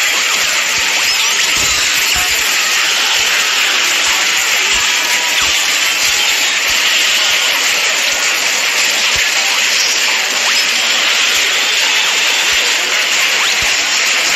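Loud, dense wall of layered cartoon brawl sound effects: a continuous hiss-like clatter dotted with many small hits and scattered low thumps.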